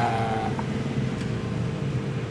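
A steady low mechanical hum, with one faint light click a little after a second in.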